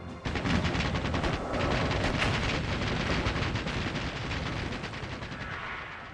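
Rapid, sustained machine-gun fire, a dense stream of shots starting a fraction of a second in and easing slightly near the end.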